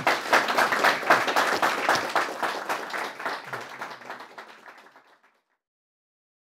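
Audience applauding, strongest at first and fading away, ending about five seconds in.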